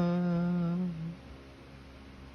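A single voice holding the song's final note, hummed, which stays level, dips slightly and dies away a little after a second. Faint room tone follows.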